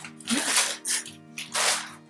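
A thin plastic bag rustling and crinkling in three or four short bursts as it is handled and tossed aside, over soft background music.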